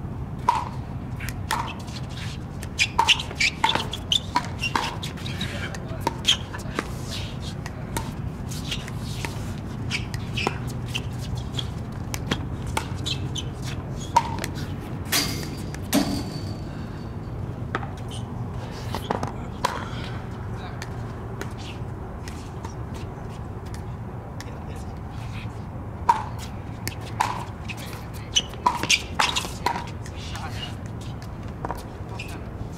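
Pickleball paddles striking a plastic pickleball in doubles rallies: a run of sharp pocks, about one a second or faster, in the first few seconds and again near the end, with only a few single hits between.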